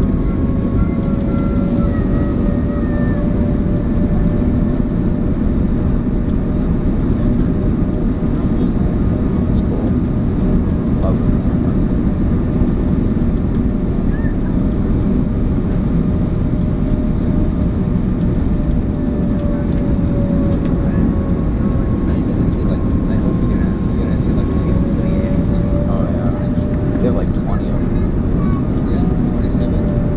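Cabin noise inside an Airbus A340-500 on final approach: a steady rush of air and engine noise from the Rolls-Royce Trent 500 engines, with a faint engine hum whose pitch drifts slightly down and back up as thrust is adjusted.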